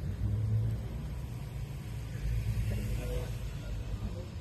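Outdoor parking-lot ambience: a steady low rumble, swelling about half a second in and again around two and a half seconds.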